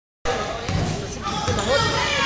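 A basketball bouncing on a hardwood gym floor in a large gym, with a couple of low thuds, mixed with players' voices.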